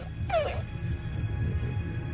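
A young woman's brief, high whimpering sob that falls in pitch, about half a second in, over a quiet background music bed.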